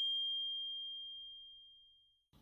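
A single bell-like ding: one clear high tone struck just before the start, ringing and fading out steadily over about two seconds.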